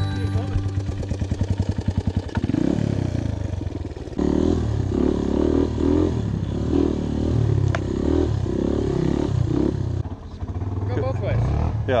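Vintage Honda dirt bike engine heard from the rider's seat: a rapid low putter for the first couple of seconds, then the engine running under throttle along the trail, swelling and dipping as the throttle is worked. It drops away about ten seconds in.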